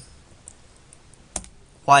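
A single computer key press, a sharp click a little past halfway, with a fainter tick about half a second in, as the value 1 is typed into a function dialog.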